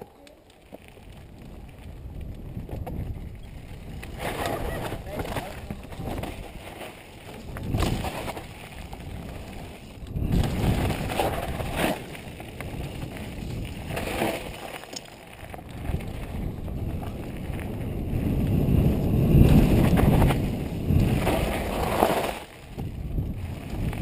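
Mountain bike descending a dirt trail, heard from a helmet-mounted camera: tyres and bike rattling over the ground with wind buffeting the microphone. It starts quiet and builds as the bike picks up speed, swelling and easing through the run and loudest near the end.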